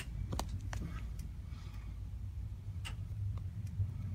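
Scattered light clicks and knocks, about a dozen spread irregularly, over a low steady rumble.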